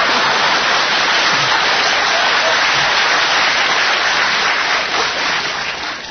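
Studio audience laughing and applauding in response to a joke, loud and sustained, dying away near the end.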